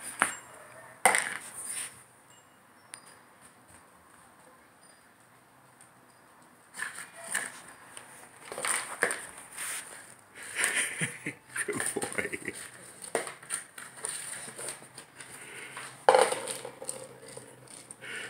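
A clear plastic cup knocking, scraping and clattering on a wooden floor as a puppy noses and paws it about, trying to get at a treat under it. The irregular knocks start about a third of the way in, with the loudest knock near the end.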